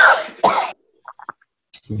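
A woman sneezing into her cupped hands: one sharp sneeze about half a second in.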